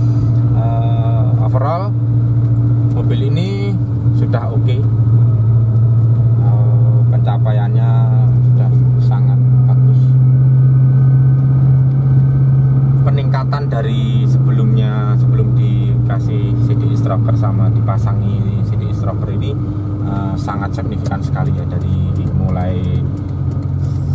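Suzuki Escudo engine, fitted with an aftermarket 7Fire CDI ignition, droning steadily inside the cabin while driving on the road. It is a little louder in the middle and eases near the end.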